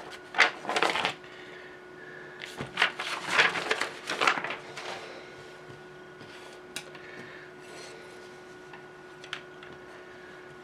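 Paper instruction sheets rustling as they are handled and moved, in two bursts, followed by a couple of light clicks.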